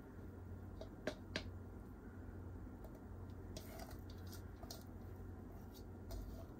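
Faint wet squishing and a few light clicks as gravy is poured and scraped from a bowl onto tandoori chicken. Two sharp clicks come about a second in, and softer ticks follow a couple of seconds later.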